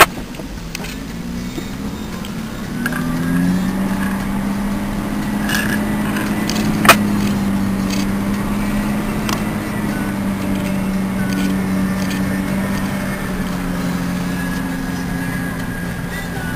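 A four-wheel-drive vehicle's engine heard from inside the cab, its revs climbing over the first few seconds and then holding steady. A single sharp click comes about seven seconds in.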